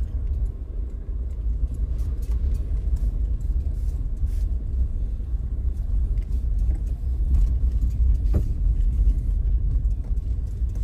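Steady low rumble of a car driving slowly over a rough concrete road, heard from inside the cabin, with scattered small clicks and rattles.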